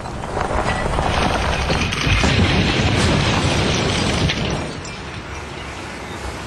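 A police cruiser rolling off a quarry edge and crashing down the rock face: a long crash of crunching metal, breaking glass and tumbling rock that builds over the first couple of seconds and eases off after about four seconds.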